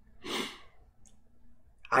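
A man's single audible breath, a short sigh-like rush of air about half a second in, then quiet until his voice resumes at the very end.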